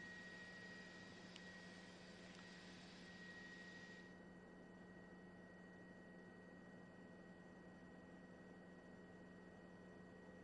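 Near silence: a faint steady high-pitched tone and low hum, with a faint hiss that drops away about four seconds in.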